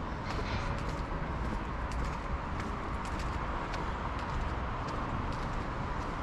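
Steady rushing of a small, fast-flowing stream, with faint clicks of footsteps on paving.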